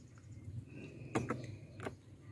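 Light plastic clicks and knocks from handling the cabin air filter cover and glove-box trim while fitting the cover back into place, with a few short taps in the second half over a faint low hum.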